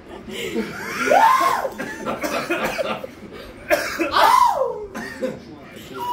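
People coughing and making strained, wavering vocal sounds as their mouths burn from a super-hot pepper-seasoned nut, in two main bouts about a second in and about four seconds in.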